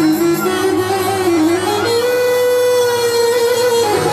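Tunisian wedding music: a lead melody that slides between held notes over a steady accompaniment.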